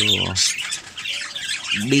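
Parakeets chattering and squawking, a busy scatter of short high-pitched calls.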